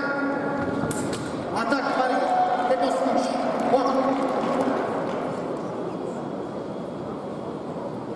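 Sabre bout: a couple of sharp clicks of blades meeting in the first two seconds, then a fencer's long shout after the touch is scored, over the hum of the arena crowd.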